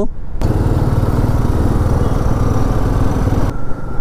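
Motorcycle engine running with road and wind noise while riding along a highway at around 40–50 km/h, a steady noise that sets in about half a second in and drops away near the end.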